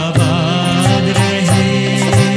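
Live acoustic Hindustani orchestra music in the old film-song style: violin and mandolin melody over a steady drum beat.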